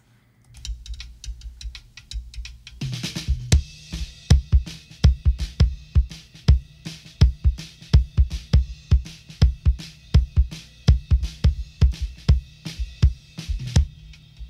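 Soloed kick-drum microphone track of a live drum recording played back: a fast, steady run of deep kick hits starting about half a second in. Fainter bleed from the snare, toms and hi-hat sounds between and around them.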